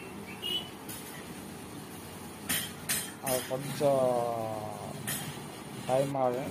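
A few sharp metal clinks, two close together about two and a half seconds in and another near the end, from steel parts being struck or handled over steady workshop noise. A man's voice calls out between them.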